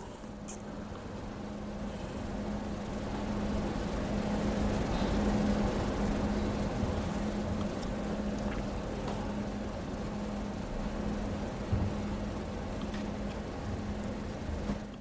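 Steady background room noise with a constant low hum and a broad rumble that swells slightly in the middle, with a few faint high chirps and light ticks.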